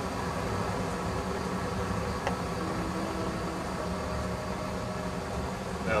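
Gas burner of a raku kiln firing: a steady rushing noise with a low rumble.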